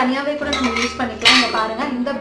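Stainless steel serving bowls clinking and rattling against each other as they are handled, with a sharp metallic clink about a second in, over a woman's voice.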